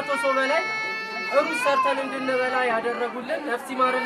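A man speaking Amharic, with other people chattering in the background.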